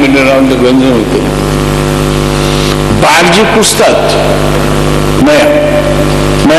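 A steady buzzing hum that holds one pitch with many even overtones, under a man's voice speaking in short phrases about a second in, around three seconds in and near the end.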